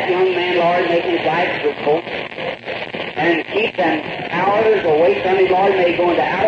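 Speech only: a man praying aloud on an old sermon recording, sounding thin, with no high end.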